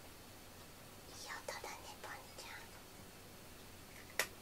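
A person whispering softly for about a second and a half in the middle, over faint room tone.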